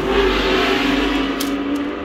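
A motor vehicle engine running close by, swelling as if revving at the start and then holding steady, with a couple of light clicks about a second and a half in.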